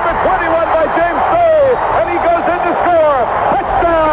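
A man's excited play-by-play football commentary, high-pitched and continuous, over crowd noise.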